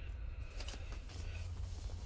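Faint rustling and a few soft clicks of fabric and paper journal pages being handled and smoothed flat, over a steady low hum.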